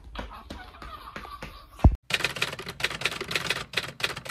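Scattered clicks and handling noise, then a single heavy thump just before the midpoint. After a brief cut-out comes dense, rapid typewriter-like clicking that carries on.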